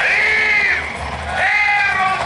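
Long, loud voiced cries that rise and fall in pitch, one at the start and another about a second and a half in, over music: actors' battle cries in a sword fight.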